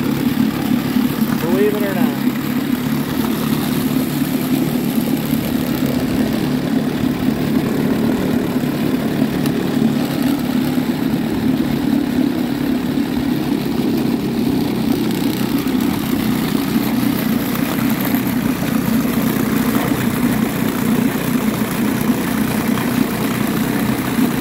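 1957 West Bend 7.5 twin-cylinder two-stroke outboard running steadily at low speed in a test tank, its cowling off, with a level, unchanging note. The motor is on a run-in test after a head gasket replacement and broken head bolt repair, being watched for water leaks.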